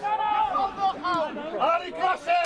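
Men's voices speaking or calling, the words not made out.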